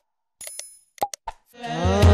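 Mouse-click sound effects from a subscribe-and-bell animation: a few sharp clicks, a short bell-like ding about half a second in, and three quick clicks about a second in. Music fades in near the end.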